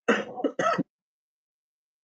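A man clearing his throat once, briefly, in the first second.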